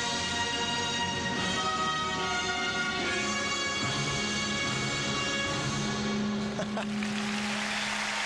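Orchestral program music for a figure skating routine, settling on a long held chord. Near the end the music gives way to applause from the arena crowd as the program finishes.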